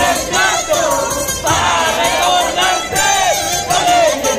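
Many high-pitched voices singing and shouting together in swooping carnival cries, over Ayacucho carnival music.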